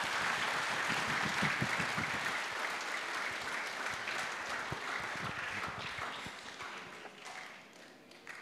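Congregation applauding, the applause slowly dying away toward the end.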